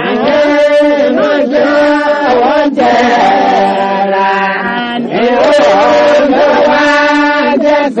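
Music: a voice singing a chant-like melody that slides between notes, over steady held low notes.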